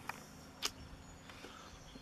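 Quiet outdoor background with a single sharp click a little over half a second in.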